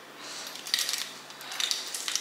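Light clicking and rattling of small objects being handled, in two short clusters: one just under a second in and one near the end.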